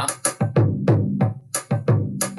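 A drum-machine groove stripped back to a few drums, without bells, shakers or tambourines: a deep bass drum beats a steady pulse, several thumps a second, with sharp clicks over it.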